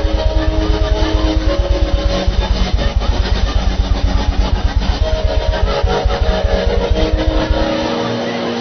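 Worship keyboard music: sustained chords held over a fast, evenly pulsing low bass note that stops near the end.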